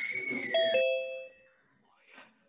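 Two-note descending electronic ding-dong chime, Zoom's participant-join sound, signalling that someone has entered the meeting. It rings out within about a second, over brief background noise at the start.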